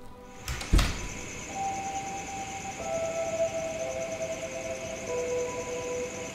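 A single heavy thud under a second in, then eerie film-score music: long held tones under a high, shimmering drone, the lower notes shifting in slow steps.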